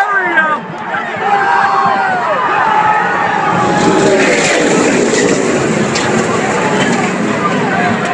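Spectators shouting, then from about three and a half seconds in a loud rush of NASCAR stock cars' V8 engines at full speed as a last-lap pile-up happens in front of the grandstand, with a couple of sharp cracks of impact.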